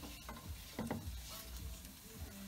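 Diced courgette being swept off a wooden cutting board into a pot of frying onion and garlic: a few quiet knocks and clatters over a faint sizzle.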